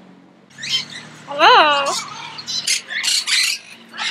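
Captive parrots squawking: a few harsh screeches, with one longer call about a second and a half in that rises and falls in pitch.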